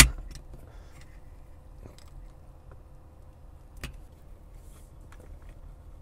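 Plastic suction-cup phone mount being handled and set onto a car dashboard: a sharp knock right at the start, faint rustling and taps, and one crisp click near four seconds in, over the low hum of a quiet car cabin.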